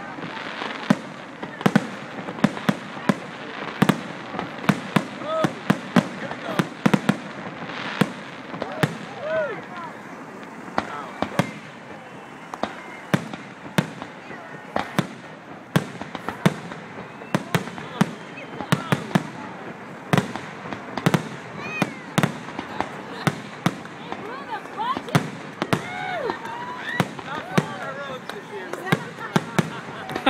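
Aerial fireworks display: a continuous run of sharp bangs and cracks from shells bursting overhead, often two or three a second.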